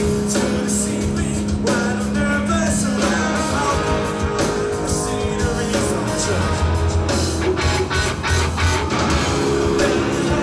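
Loud rock band playing: electric guitars and drums with a singer's voice over them, continuous throughout.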